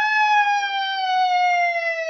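A child's voice holding one long, high wordless note that swoops up at the start and then slowly sinks in pitch.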